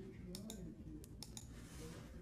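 Computer mouse clicking a few times, faint: a quick pair of clicks about a third of a second in, then more clicks around a second in, over quiet room tone.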